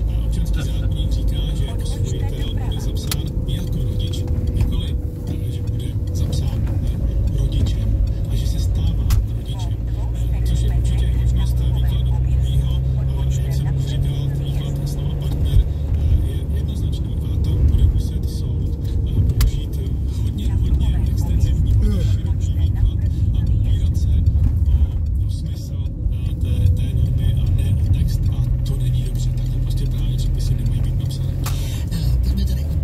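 Steady low drone of engine and tyre noise heard from inside the cabin of a car driving at a steady speed on an open road.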